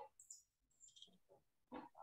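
Near silence, with a few faint, short scattered noises.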